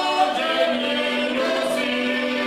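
Men's voices singing together in harmony to the accompaniment of heligonkas, Slovak diatonic button accordions, with a long held note through the second half.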